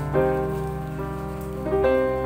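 Slow, gentle piano music with held notes, new notes struck just after the start and again near the end, over a soft steady patter of rain.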